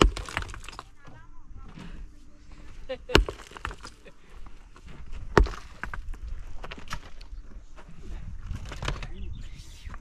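Metal mattock striking rubble stones: three sharp, loud strikes, at the very start, about three seconds in and about five and a half seconds in, with lighter clinks and scraping of loose stones in between.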